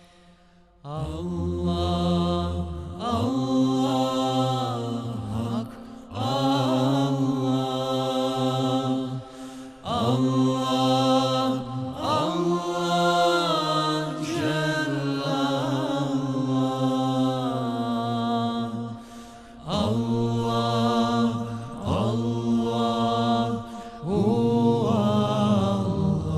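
Male vocal group singing a Bosnian ilahija with no instruments: a lead voice carries a wordless melodic line over a low drone held by the others, in long phrases with short breaks, after about a second of quiet at the start.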